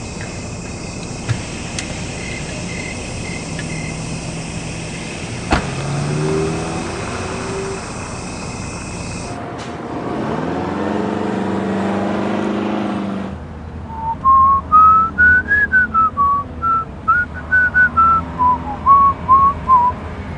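A car door shutting with a thump about five seconds in, then a car pulling away and speeding up. From about fourteen seconds in, a whistled tune, a single melody rising and falling, is the loudest sound.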